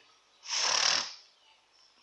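A single breath close to the microphone: a short noisy rush, under a second long, about half a second in.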